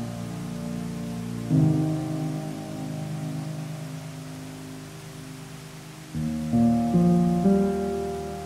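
Slow solo piano music over a steady wash of water sound. One chord is struck about a second and a half in and left to fade, then a run of chords comes near the end.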